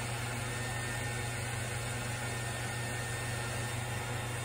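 Steady blower hum of an embossing heat tool left running to warm up, an even whirring noise with a low hum under it.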